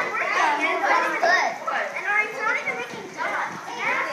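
A group of children talking and calling out over one another.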